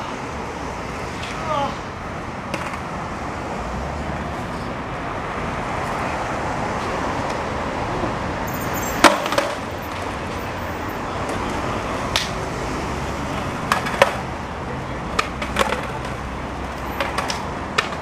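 Steady outdoor hiss with a scatter of sharp clacks of skateboards hitting concrete, the loudest about nine seconds in.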